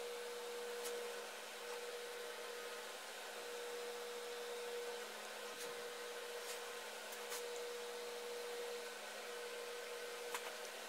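Steady background hum with a constant tone in it, and a few faint light clicks scattered through.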